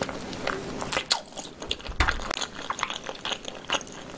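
Close-miked biting and chewing on a pig's tail, with irregular crunching and wet clicking as the meat is gnawed off the bone. A dull knock sounds about halfway through.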